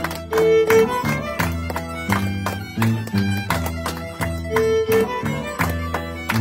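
Andean harp and violin playing a carnival tune: the harp's plucked bass notes repeat under the violin's melody, with hands clapping along.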